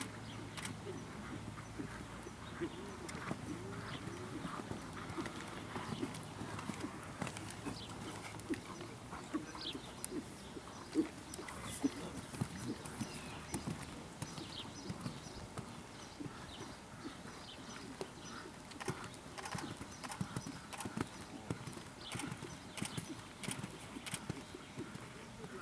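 Hoofbeats of a dressage horse trotting on sand arena footing: a run of short, soft knocks.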